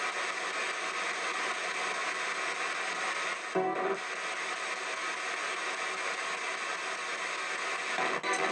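PSB-7 ghost box radio sweeping through stations, heard through stereo speakers: a continuous hiss of radio static, broken about three and a half seconds in by a brief snatch of broadcast sound.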